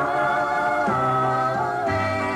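A recorded song playing: a singing voice holding long notes over a backing band, the notes changing pitch about a second in and again near the end.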